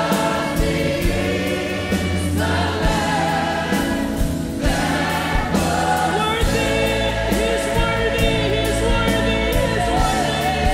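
Live gospel worship music: a choir of voices singing together over a band with steady bass notes and a regular drum beat.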